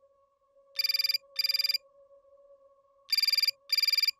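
Telephone ringing in a double-ring cadence: two pairs of short, rapidly warbling electronic rings, the second pair about three seconds in.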